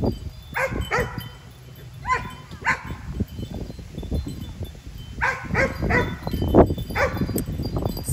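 An animal calling in short, pitched cries, about eight in all and mostly in pairs or threes, with a low rumble beneath.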